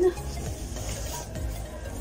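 Rustling of a shiny barber cape as it is unfolded and handled.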